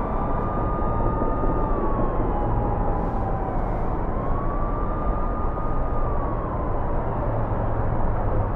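Distant siren wailing: a tone that slides up, holds and slides back down, twice in about four-second cycles. Under it is a steady low rumble.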